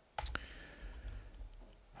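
Two quick clicks at the computer, close together just after the start, then faint room noise.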